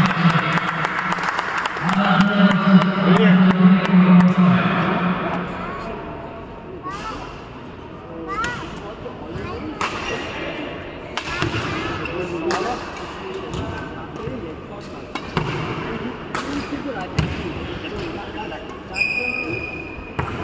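Badminton rally on an indoor court: sharp racket strikes on the shuttlecock every second or two, with footwork on the court. Voices of onlookers and a steady low hum fill the first few seconds.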